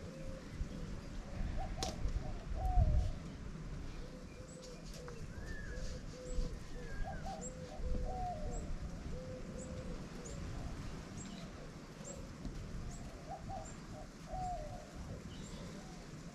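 Doves cooing in repeated phrases of short low coos, while a small bird chirps high and quick, about twice a second, through the middle. There is a low rumble of wind on the microphone, loudest a few seconds in.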